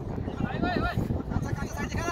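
Footballers shouting across the pitch: a high, wavering call about half a second in, and another near the end.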